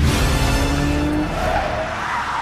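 Aston Martin DB5 sliding through a turn: a rising engine note, then tyres squealing in the second half, with a film score underneath.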